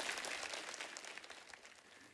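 Studio audience applause, dying away steadily.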